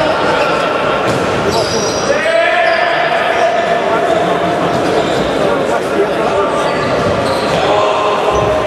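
Futsal ball being kicked and bouncing on a sports-hall floor during play, with the echo of a large hall.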